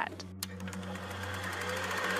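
A fast, even buzzing rattle that grows steadily louder, over a low steady hum.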